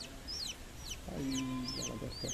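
A newly hatched chick peeping rapidly: a string of high peeps, each falling in pitch, about four or five a second. A low steady hum joins under the peeps about a second in.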